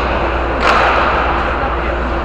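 A hockey puck struck with a stick about two-thirds of a second in, the hit echoing and fading through a large indoor ice rink, over a steady low hum.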